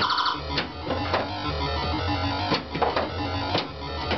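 Bally Centaur II pinball machine in play: electronic synthesized sound effects over a pulsing low bass, punctuated by sharp clicks and knocks from the playfield, about five in four seconds.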